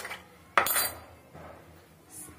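A single sharp clink of kitchen utensils or dishes about half a second in, ringing briefly, followed by a fainter knock.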